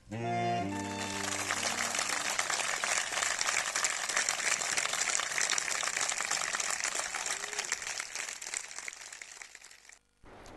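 A saxophone quartet's closing chord dies away over the first two seconds, overlapped by audience applause that carries on steadily and fades out near the end.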